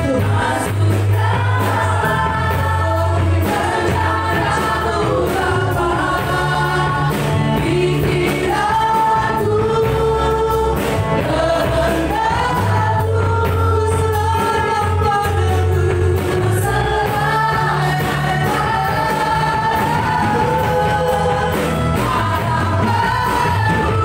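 Live worship band: several singers on microphones singing an Indonesian praise song together, backed by keyboard, guitar and drums, with a sustained bass line underneath.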